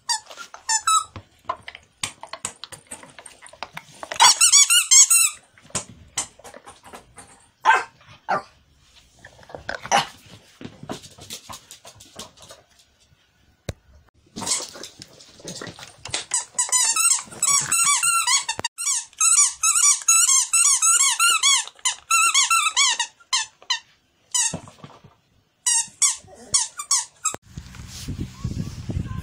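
A dog's squeaky toy squeaking again and again as small dogs chew and shake it: scattered short squeaks at first, then a long run of rapid, high squeaks through the middle and later part.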